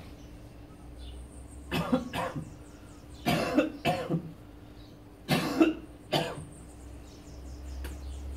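A man coughing and retching in three bouts a couple of seconds apart, each of two or three hard heaves: the nausea of a kambó purge.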